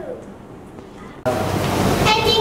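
A steady rushing noise, like wind or surf, cuts in suddenly a little past halfway, after the tail of a child's voice at the start.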